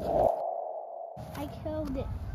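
A steady electronic tone, like a sonar ping, held for about a second and a half and then cutting off. A short pitched sound stepping down follows near the end.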